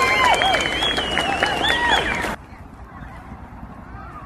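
Several girls shrieking and squealing in high, overlapping voices as they set off running a race. The shrieks cut off suddenly a little over two seconds in, leaving only a faint low background.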